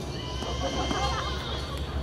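A person's voice calling out, drawn out and wavering in pitch, over a low steady rumble.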